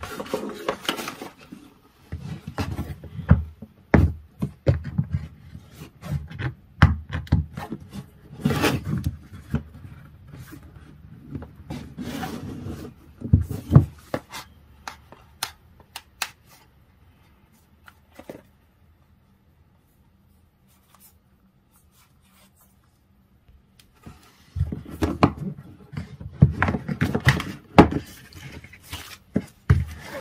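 Cardboard packaging being handled and opened on a wooden tabletop: rubbing, scraping and light knocks and taps. It falls almost silent for about seven seconds after the middle, then the handling starts again.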